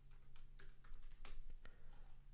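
Faint typing on a computer keyboard: a series of light keystrokes as a short name is typed in, over a low steady hum.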